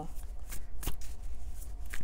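Tarot cards being handled and shuffled off-camera, with a few light clicks of card against card over a low steady hum.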